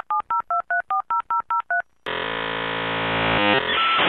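Dial-up modem sound effect: about ten quick touch-tone dialing beeps in under two seconds, a short pause, then a steady electronic connection tone that breaks up into hiss near the end.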